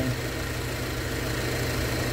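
A car engine idling: a steady, even low hum.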